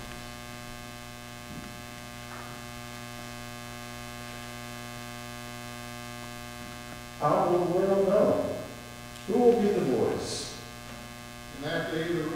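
Steady electrical mains hum on the sound system once the organ has stopped. Past the middle come two short stretches of faint, indistinct voice-like sound, each about a second and a half long.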